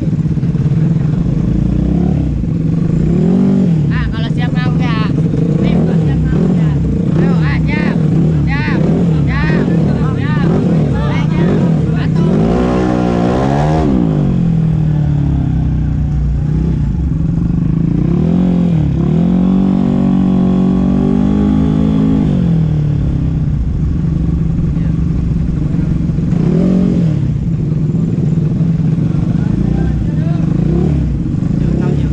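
Ported standard-engine Vespa Matic scooters idling and being revved in quick repeated throttle blips, then a bigger rev near the middle and a longer held rev a few seconds after it.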